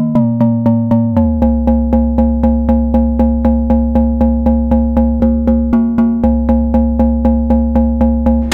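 Harvestman Piston Honda Mk II wavetable oscillator played as a percussive sequence through a Make Noise Optomix low-pass gate. It gives a fast, even pulse of short pitched strikes whose tone shifts about a second in and then holds steady.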